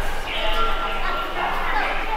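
Voices of passers-by in a busy subway station passageway, with short high-pitched calls rising and falling.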